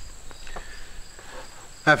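A steady, high-pitched insect trill, with a few faint clicks of small tools being handled on a wooden bench.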